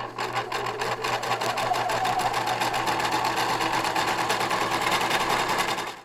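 Sewing machine running at a steady speed, the needle stitching in a fast, even rhythm over a low motor hum. It fades out near the end.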